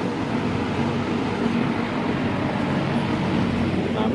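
Berns Air King MR20F box fan, with its Westinghouse motor, running steadily on medium speed: an even whir of moving air over a low, steady motor hum.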